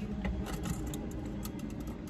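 Small irregular clicks and taps from a plastic water bottle's lid and straw being handled, over a steady low rumble inside the car.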